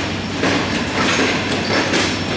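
Pakistan Railways passenger coaches rolling slowly past, a steady rumble of wheels on track with a few clicks as the wheels cross rail joints.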